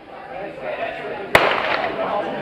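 Starting pistol fired once for a sprint start, a single sharp crack about a second and a half in, over crowd chatter.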